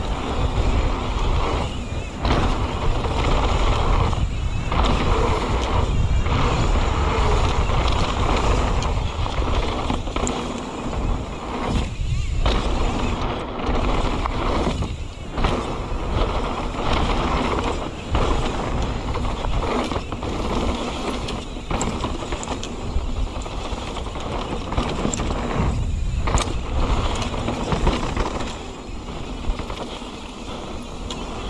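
Mountain bike riding fast down a dirt trail: wind rushing over the camera microphone and knobby tyres rolling on dirt, with the bike rattling. The steady rushing noise dips briefly several times.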